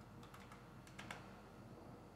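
Faint computer keyboard clicks: a few quick keystrokes in two short groups in the first second or so.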